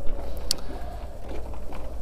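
Low steady rumble of outdoor background noise, with a single short sharp click about half a second in.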